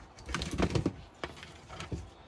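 Handling noise from a ring light's power cord and small plastic inline remote being picked up: a quick run of light clicks and knocks in the first second, then a couple of single taps.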